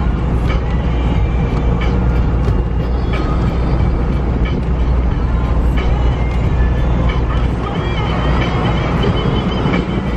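Loud, steady rush of wind buffeting and road noise inside an open-top car driving at speed on the open road, with a heavy low rumble.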